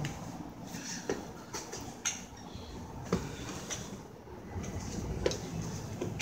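Elevator car buttons being pressed: several sharp clicks scattered through, over a low hum that grows louder near the end.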